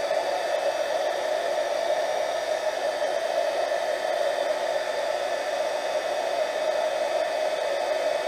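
Embossing heat gun running: a steady blowing hum with no change in pitch as it melts black embossing powder on a puzzle piece.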